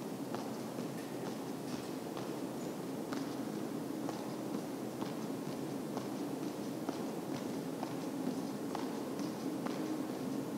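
Sneakers landing and pushing off on a hardwood gym floor as two people jump forward and back over a line: irregular light thuds and scuffs, about one or two a second, over steady room noise.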